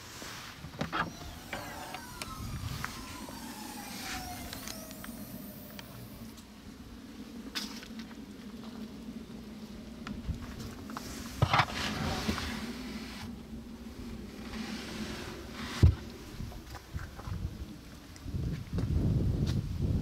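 Hatchback tailgate of an Audi S3 Sportback being unlatched and opened: a latch click, then a whine gliding down in pitch over a few seconds. Later come two sharp knocks.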